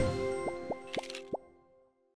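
Outro sound logo of a news channel: held synth tones fade away under four short upward-gliding bloops, the last about a second and a half in, and then the jingle ends.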